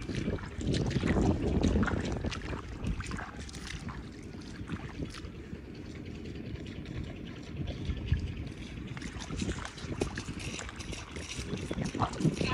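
Wind rumbling on the microphone, with footsteps squelching and splashing through shallow water and mud.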